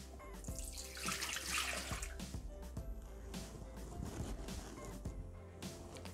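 Water poured from a glass jug into the empty stainless-steel mixing bowl of a Bimby (Thermomix) food processor, a splashing pour lasting about a second and a half.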